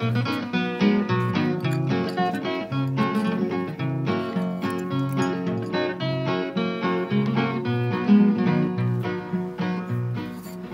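Background music: an instrumental break on acoustic guitar, a picked melody over a steady, alternating bass line.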